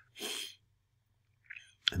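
A single short, breathy burst from the narrator, lasting under half a second about a quarter second in, like a stifled sneeze or a sharp breath out through the nose. A faint breath follows near the end, just before he speaks again.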